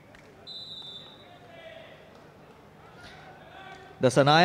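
Faint sound of a kabaddi match in an indoor hall: distant voices and light thuds from the court. A thin, steady high tone starts about half a second in and lasts under a second.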